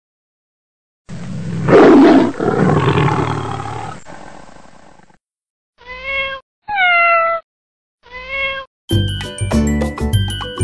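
A loud, rough, drawn-out cry that peaks early and fades over about four seconds. Three short cat meows follow, the first and last alike and the middle one falling in pitch. Upbeat music with mallet percussion starts just before the end.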